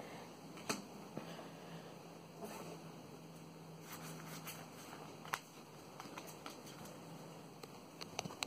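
Faint handling of a stack of Pokémon trading cards: soft rustling with a few light clicks and taps as the cards are shifted in the hands.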